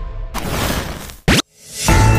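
Video-intro transition sound effects: a swelling rush of noise that ends in a quick, sharp upward sweep, a moment of silence, then a rising swell into background music with a steady low bass line.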